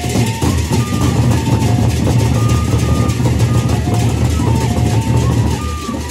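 Gendang beleq ensemble playing loudly: large double-headed barrel drums and cymbals in a dense, unbroken rhythm, with short pitched notes over the top.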